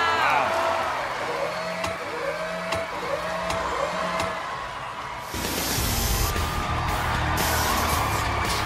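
Backing music for a dance routine: a short rising tone repeats about once a second. A little past five seconds in, it switches abruptly to a louder, bass-heavy section with sharp hits.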